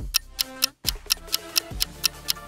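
Countdown timer sound effect ticking rapidly, about six ticks a second, over background music.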